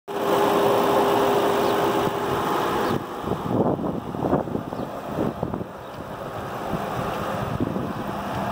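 Ford 4.6-litre V8 idling with the hood open, loud and steady with a held hum for the first three seconds. After that it falls quieter under irregular rustling.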